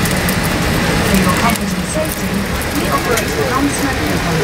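Boeing 787 airliner cabin ambience: a steady cabin hum and rushing noise with indistinct passenger voices murmuring underneath.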